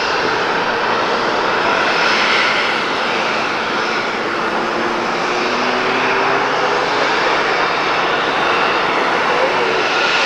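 The Gulfstream G650ER's twin Rolls-Royce BR725 turbofan jet engines running: a steady, loud rush with faint whining tones that drift slowly upward in pitch.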